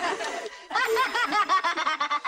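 A person laughing: a quick run of short chuckles, about eight a second, starting a little under a second in after a brief pause.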